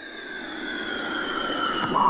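A synthesized whoosh swelling steadily louder, with several tones gliding slowly downward through it: an intro sweep effect at the head of a song.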